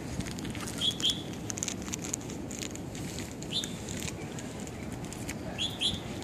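Birds chirping in short, separate calls: two about a second in, one mid-way and two more near the end, over a steady low background noise with scattered faint clicks.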